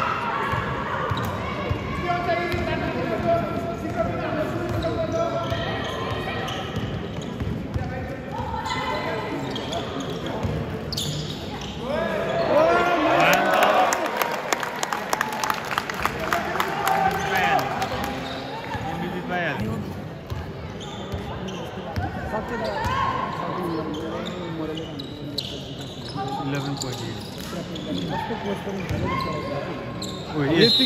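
Basketball game in a large echoing gym: the ball bounces on the court amid voices, with louder shouting and a quick run of claps about halfway through.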